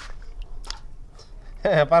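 Faint small splashes and squelches of a hand groping in water in a steel basin, grabbing at small fish. A man's voice shouts in near the end.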